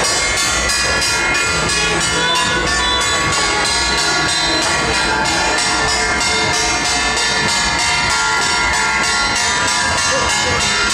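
Hand-held brass gongs and cymbals of a temple procession struck in a fast, steady beat, their metal ringing continuously and loudly.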